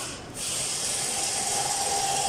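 A hand-held power tool running steadily on a bolt at the timing-belt tensioner, starting about a third of a second in with a brief hiss just before it.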